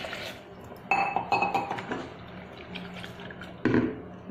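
Water being poured into an aluminium pressure cooker over dal and vegetables, a steady pouring and splashing, with sudden louder sounds about a second in and again near the end.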